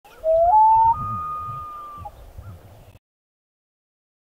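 Intro logo sound effect: a single clear, whistle-like call that rises in two steps and holds for about a second, over a low rumble. It cuts off about three seconds in.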